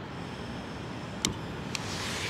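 Gas hissing steadily as a Soto extendable torch lighter is held to a Fire Maple Mars radiant stove burner to light it, with two sharp clicks of the igniter about half a second apart, after which the hiss grows a little louder.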